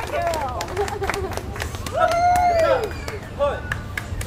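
Bokator martial artists shouting during their routine: a long call that rises and falls about two seconds in, with shorter calls before and after it. Sharp claps and slaps keep sounding through it.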